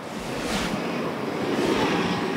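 Steady rushing outdoor background noise on a live field microphone, swelling slightly toward the end.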